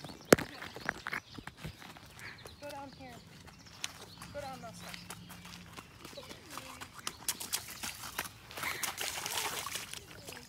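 Faint, distant voices with scattered sharp clicks or knocks. A single loud crack comes right at the start.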